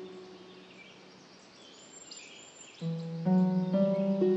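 Slow meditation music: held notes fade away, leaving a soft bed of ambient nature sound with birds chirping, and then a new set of sustained low notes comes in about three seconds in.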